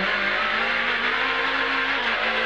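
Renault Clio S1600 rally car's 1.6-litre four-cylinder engine pulling hard under acceleration, heard from inside the cabin, its pitch rising gently and steadily, with loud mechanical and road noise.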